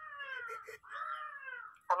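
Cat meowing twice: two long, drawn-out meows, each falling in pitch.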